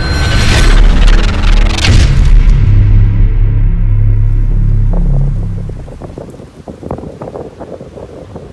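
Logo-intro sound design: two heavy booming hits in the first two seconds over a deep, loud, low drone that fades out about six seconds in. Fainter wind noise on the microphone follows near the end.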